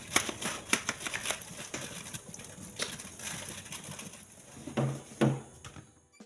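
White plastic fridge racks and trays clattering and knocking against each other and the steel sink as they are scrubbed and rinsed under a running tap. Quick bursts of clicks, busiest in the first second or so, with a couple of duller knocks near the end.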